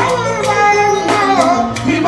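Live fuji music: a man singing lead into a microphone over the band's bass guitar and drums, with regular percussion strikes.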